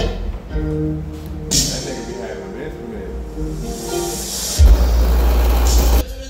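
A song playing loud through a car audio system during a bass test, with a heavy sub-bass note coming in at about four and a half seconds in and becoming the loudest part.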